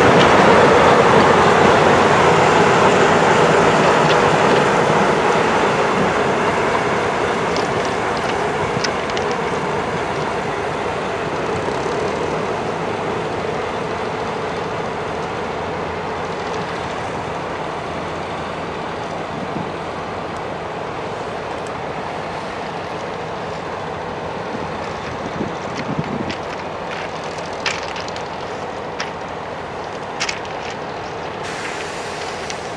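A museum train hauled by Finnish Dv15/Dv16 diesel-hydraulic locomotives running along the track and moving away, its engine and wheel noise loudest at first and fading steadily. A few sharp clicks come near the end.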